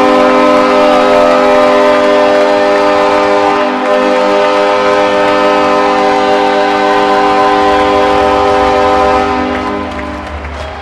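Arena goal horn sounding one long, steady multi-tone chord to signal a home-team goal, dying away about nine and a half seconds in.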